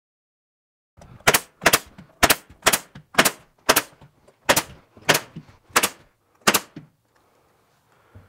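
Pneumatic stapler firing staples into a plywood deck sheet, about ten sharp shots at roughly two a second, starting about a second in.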